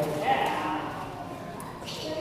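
A young child's short, high vocal sound with a rising pitch early on, then quieter voices in the background.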